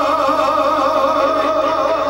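A man singing a Romanian Banat folk song live into a microphone, holding one long note with a steady, wide vibrato.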